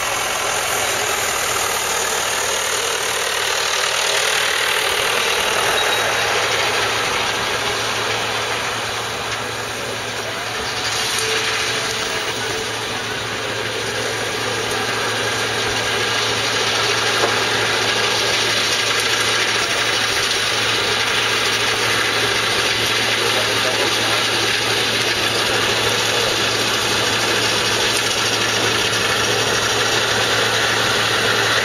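Steady running of a Claas Tucano combine harvester's diesel engine and threshing machinery while it cuts barley close by, a continuous mechanical noise that dips slightly about ten seconds in.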